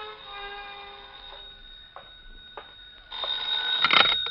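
A held musical chord dies away, then a telephone bell rings loudly for about a second near the end: a radio-drama sound effect of an incoming call.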